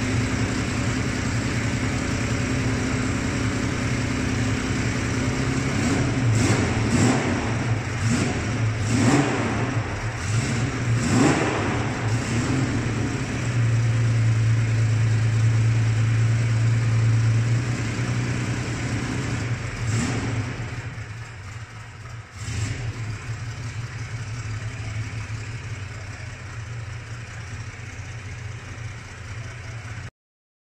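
Car engine running: idling steadily, revved several times in the middle and held at a higher, steady speed for a few seconds, then dropping away sharply and settling much quieter for the rest.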